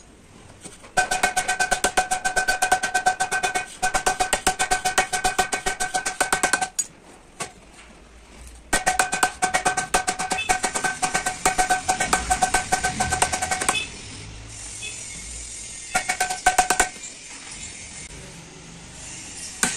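Rapid hammer taps on a steel truck clutch plate, several a second, with the metal ringing on a steady tone. There are two long runs of tapping of about five seconds each, then a short burst near the end.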